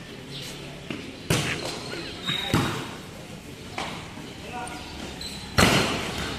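Volleyball being hit and bouncing on a concrete court: three sharp smacks with some hall echo, the loudest near the end.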